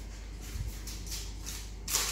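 Floured hands patting and smoothing raw puff pastry wrapped around a meat filling on a baking tray: soft brushing and rubbing, with a faint low bump about half a second in and a light tap near the end.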